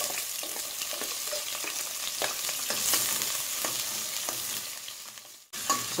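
Diced onions sizzling as they sauté in a stainless steel pot, a spoon stirring them with light scrapes and clicks against the pot. The sound drops out briefly near the end.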